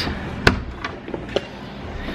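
A sharp click about half a second in, then a few lighter clicks and taps: handling and movement noise from a handheld camera carried through a house.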